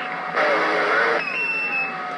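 Galaxy CB radio receiving between transmissions on channel 28: a hiss, then a loud rush of static for about a second. A whistling tone then slides down in pitch alongside a steady higher whistle, the heterodyne of distant carriers.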